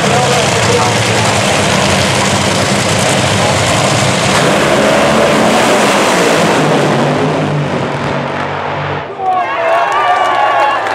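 Top Fuel dragsters' supercharged nitromethane-burning V8 engines running loudly at the start line. About nine seconds in the engine sound cuts off suddenly, and voices and crowd noise follow.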